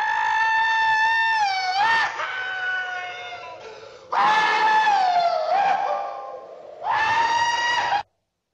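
A man whooping and hollering cowboy-style while riding a falling bomb: three long, high yells, the first bending down in pitch near its end. The sound cuts off abruptly at the very end.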